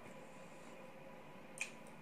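Quiet eating sounds close up: one short, sharp wet click about one and a half seconds in, over a faint steady hum.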